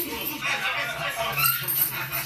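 A dog whimpering and yipping with a person's voice, over a steady low hum.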